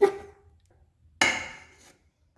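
A chef's knife pushing chopped vegetables off a wooden cutting board into a stainless steel pot. It starts with a sharp knock and a short ring, and about a second in there is a brief scrape that fades out quickly.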